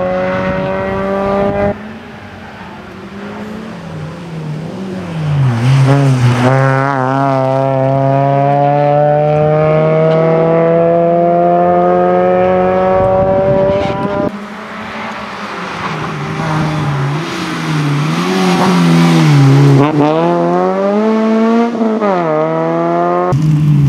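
Suzuki Swift rally car's four-cylinder engine pulling hard, its revs climbing steadily through long runs in gear with sharp drops at the gear changes. Twice the driver lifts off and blips the throttle on downshifts, slowing for a corner, before accelerating hard again.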